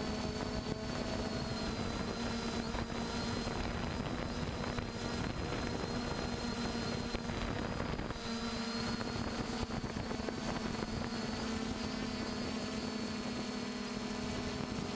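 Quadcopter drone's motors and propellers running steadily in flight: a constant hum with a thin high whine over a wash of rotor noise, the pitch sagging slightly about eight seconds in.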